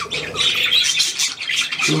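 Budgerigars chattering: a dense, continuous run of short high chirps and squawks.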